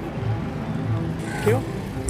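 A motorcycle engine running close by at idle, under a low background beat.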